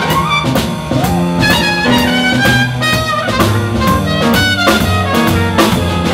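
Jazz big band playing live in an instrumental passage: trumpets, trombones and saxophones over upright bass, piano and drum kit keeping a steady beat.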